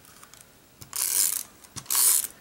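A freshly refilled Tombow tape runner pushed along paper in two short strokes. Each stroke is a brief scratchy whirr of its tape-winding gears, with small clicks between them. The runner is not yet feeding its dot adhesive cleanly.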